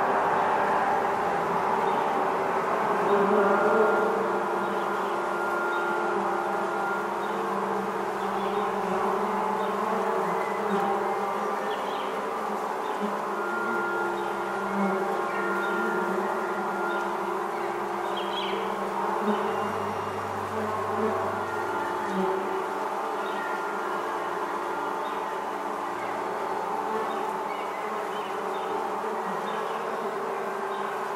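Steady massed buzzing of a honeybee swarm, worked into an ambient piece with held pitched tones that come and go over it. About twenty seconds in, a deeper note sounds for about two seconds.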